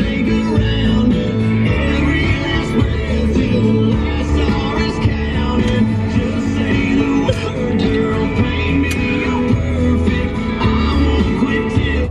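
A song with singing and guitar, playing on the truck's radio.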